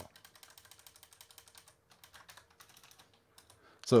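Faint computer keyboard keystrokes while a line of code is edited: a quick run of presses for about two seconds, then a few scattered ones.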